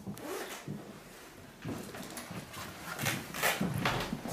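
Rustling and handling noise from a handheld camera being carried while walking, in a few short noisy bursts, the loudest near the end.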